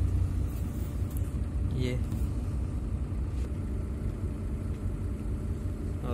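Steady low rumble of a shuttle bus driving, heard from inside its cabin.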